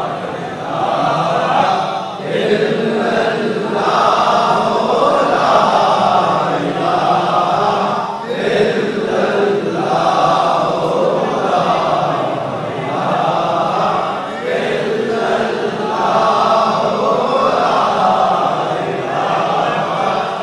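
A crowd of men chanting together in repeated phrases of about two seconds each, with brief dips between phrases.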